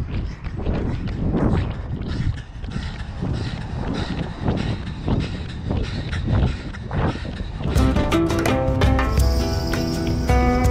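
A runner's footfalls on a paved path, a quick even stride of about three steps a second. About seven and a half seconds in, plucked acoustic guitar music comes in.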